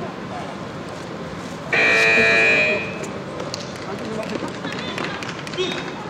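Competition scoreboard buzzer sounding once, a steady pitched tone lasting about a second: the signal that the taekwondo bout's time has run out.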